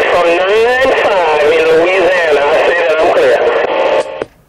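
A man's voice heard through a CB radio's speaker, another station transmitting on channel 19 (27.185 MHz), with narrow radio-band sound. The transmission cuts off suddenly at the end.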